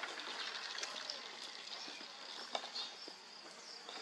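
Quiet outdoor ambience: insects chirring steadily at a high pitch, with a few faint clicks.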